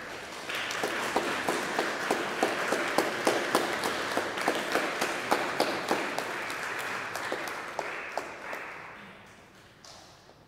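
Congregation applauding in a cathedral nave, a dense patter of many hands that builds quickly, holds, and dies away near the end.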